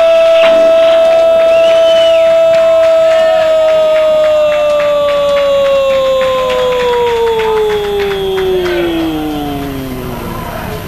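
Brazilian football commentator's long drawn-out goal cry, one high note held for several seconds, then sliding down in pitch and fading over the last few seconds.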